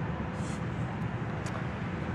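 Steady low rumble of street traffic: city background noise.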